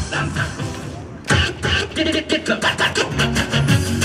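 Dance music played through outdoor loudspeakers: one track fades out, and about a second in a new track starts abruptly with a quick, steady beat.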